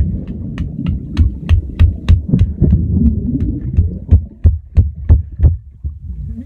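Muffled underwater sound of water churning around a submerged phone, with a regular train of sharp clicks about three a second that stops shortly before the end.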